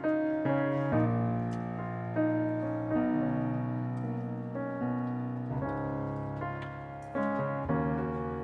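Piano playing slow, sustained chords, each struck and left to ring and fade before the next.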